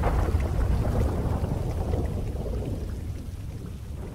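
Thunderstorm ambience: a low, rolling thunder rumble under falling rain, fading out steadily over the second half.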